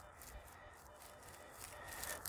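Near silence: faint outdoor background with no distinct sound.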